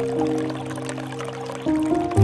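Soft instrumental music of long held notes, the chord changing twice, over a light trickle of water pouring from a bamboo spout into a pool.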